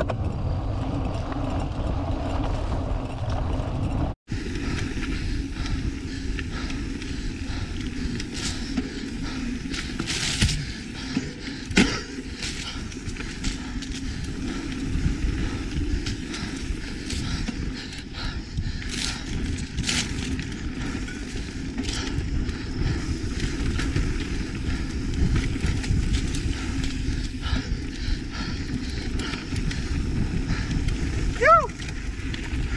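Mountain bike rolling along a dirt forest singletrack: a steady rumble of tyres and wind over the action camera's microphone, with occasional sharp clicks and rattles from the bike.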